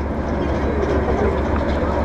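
Steady wind rumble buffeting the microphone, with faint voices in the background.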